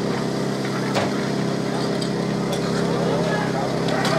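Portable fire pump's engine running steadily at the competition base, with a sharp click about a second in and faint crowd voices.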